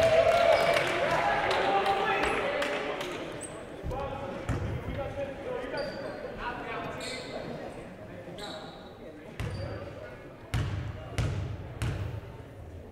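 A basketball bounced on a hardwood gym floor a handful of times, spaced-out single bounces as a shooter dribbles at the line before a free throw. Voices of the crowd chatter fade out over the first few seconds.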